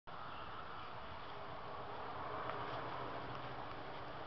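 Steady, faint outdoor background noise, an even hiss with no distinct events, and a faint click about two and a half seconds in.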